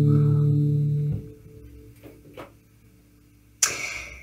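Final chord of a song on acoustic guitars and bass guitar ringing, then stopped about a second in, followed by two faint clicks and a sudden short burst of noise near the end.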